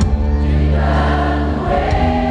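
Live Catholic worship song amplified through a PA in a large hall: a group of voices singing long held notes over a band with a steady, heavy bass.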